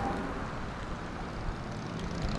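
Steady outdoor street noise: an even rumble with no distinct events.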